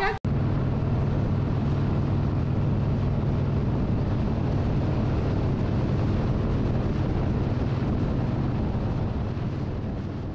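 Harley-Davidson motorcycle cruising at highway speed: steady wind rush on the microphone over the engine's low drone, fading out near the end.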